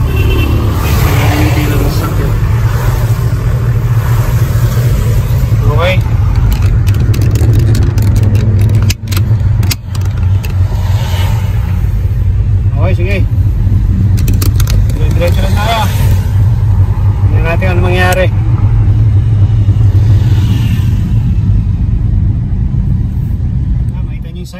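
A car's steady low road and engine rumble, heard from inside the cabin while driving on a wet road, with brief drops in level about nine and ten seconds in.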